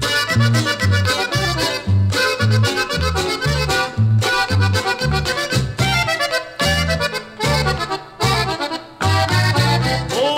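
Instrumental introduction of a norteño ranchera, with the accordion playing the melody over a bass line that bounces evenly between low notes.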